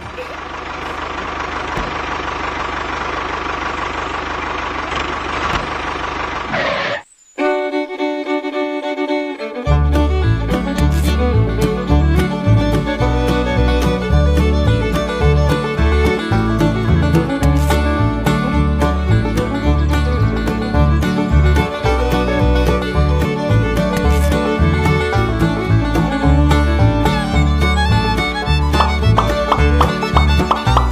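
Background music: a steady, dense, noisy sound cuts off suddenly about seven seconds in, and after a short gap a lively fiddle-and-banjo tune in bluegrass style starts, its bass and beat coming in a couple of seconds later.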